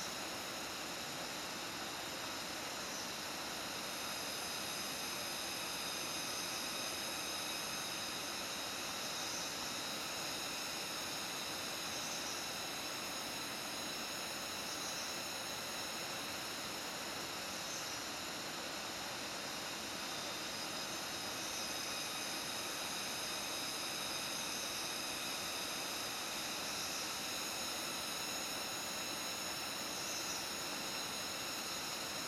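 Steady forest background: an even hiss with several high, steady whining tones and faint short chirps every few seconds.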